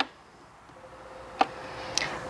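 Fat Brain Toys Air Toobz electric blower switched on at its lowest setting: a faint fan hum with a steady tone that starts about half a second in and slowly grows louder. A single sharp click sounds about a second and a half in.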